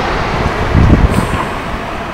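Road traffic on a city street, a steady wash of noise with a low rumble swelling about a second in.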